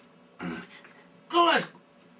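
A man clearing his throat: a short rough rasp about half a second in, then a louder brief voiced sound falling in pitch near the end.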